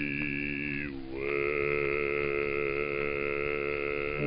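Music from an early phonograph recording of the 1910s–20s: long held notes that slide to a new pitch about a second in, then hold again.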